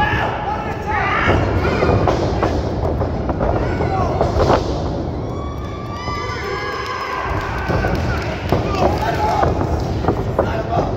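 Thuds of wrestlers striking each other and hitting the ring canvas, the sharpest about four and a half seconds in, over shouting voices from a small crowd.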